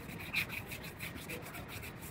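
Hand scuffing with a grey abrasive pad on a painted vehicle body part, quick back-and-forth rubbing strokes.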